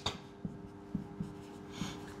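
Marker pen writing on a whiteboard: faint, scattered taps and strokes of the tip, over a low steady hum.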